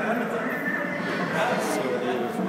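Indistinct background voices of several people talking, steady and continuous, with no single voice standing out.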